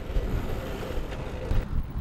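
Low, rumbling wind noise buffeting the microphone.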